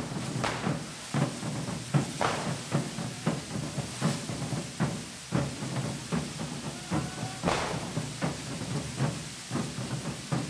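Hand-held carretilla firework fountains fizzing and spraying sparks, with a rapid, fairly even run of sharp bangs and cracks and a few louder bursts.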